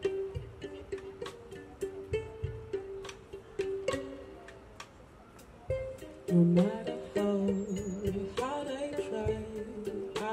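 Live indie band music: violin plucked pizzicato over light drum-kit taps. About six seconds in, the music swells, with a sustained low keyboard note, bowed violin and a woman singing.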